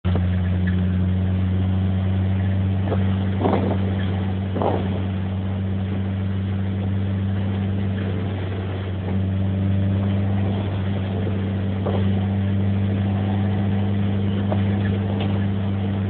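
Triumph Spitfire Mk3's 1296 cc four-cylinder engine running steadily under way as the car is driven, a constant low drone. It eases off slightly around six seconds in and picks up again about three seconds later. Two brief knocks come around three and a half and four and a half seconds in.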